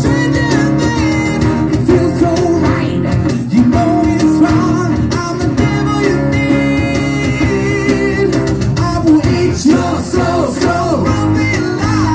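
A live acoustic rock band plays: acoustic guitars are strummed and picked, a lead vocalist sings into a microphone, and hand percussion keeps a steady beat.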